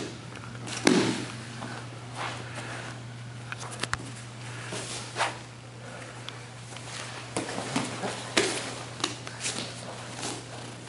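Jiu-jitsu grappling on foam mats: cloth gis rustling and scuffing, with irregular thumps of bodies and limbs on the mat. The loudest thump comes about a second in, and a run of smaller ones comes near the end.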